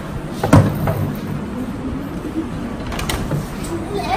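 A single dull thump about half a second in, the loudest sound here, over steady hall room noise, with a couple of light clicks near the end.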